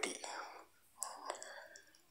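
Quiet, breathy speech from a recorded voice message, trailing off between phrases while an email address is dictated, with a couple of faint clicks about a second in.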